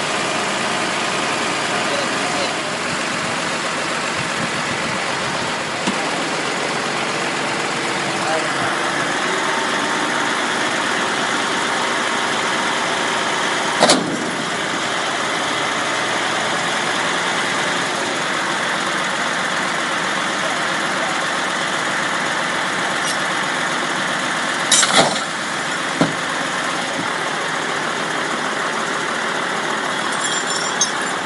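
Tow truck engine running steadily while its winch hauls an overturned car upright by a cable. Two sharp knocks stand out, one about halfway through and a cluster a little later.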